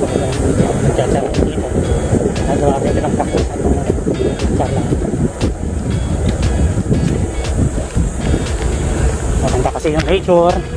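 Wind buffeting a bicycle-mounted microphone over the hum of road-bike tyres on pavement while riding, with a faint tick repeating a little under once a second.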